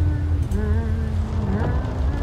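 Opening of a film trailer's soundtrack: a deep, steady rumble under long held tones that drop in pitch about halfway through.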